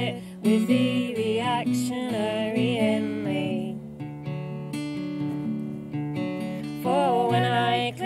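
Acoustic guitar played with women's voices singing a folk song. The voices drop out for a few seconds in the middle, leaving the guitar alone, and come back near the end.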